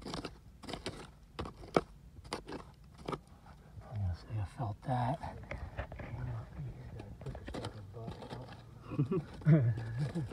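Dirt and buried debris being dug out by hand in a bottle dump, a quick run of sharp crunching and scraping clicks in the first few seconds, with low voices later.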